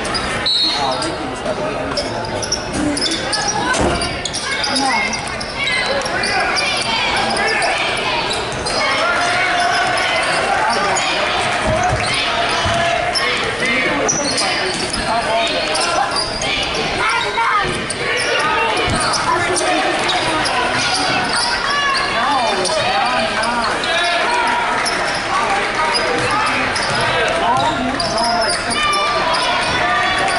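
Live basketball game sound in a large gym: a ball bouncing on the hardwood floor amid many overlapping voices and shouts from players and spectators, echoing in the hall.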